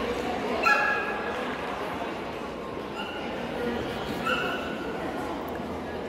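A dog barking three times in short, high barks: the loudest a little under a second in, then two more at about three and four seconds.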